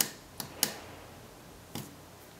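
Small tactile push-button switch on a breadboard clicking as it is pressed and released: about four short, sharp clicks, the loudest right at the start and about half a second in.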